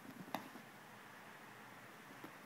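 A few quick soft knocks and scuffs in the first half second, the loudest about a third of a second in, from a puppy's paws scrambling and pouncing on carpet; then only faint room hiss.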